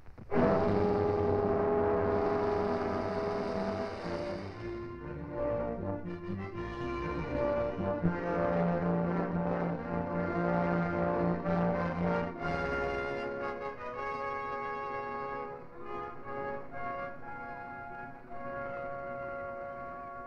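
Orchestral film score led by brass. It comes in loudly at once and moves through a series of held chords, with a long low note sustained in the middle.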